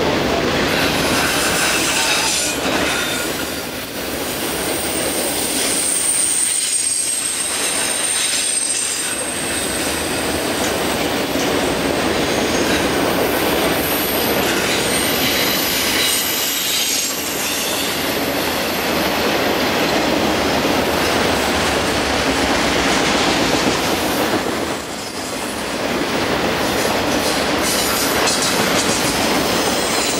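Freight train of multilevel autorack cars rolling steadily past close by: continuous wheel and rail noise with a clickety-clack. A thin high-pitched wheel squeal runs for several seconds near the start, and the din briefly eases three times as car ends go by.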